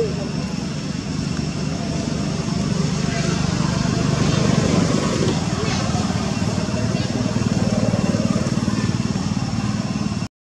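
A small engine running steadily nearby, a little louder from about three seconds in.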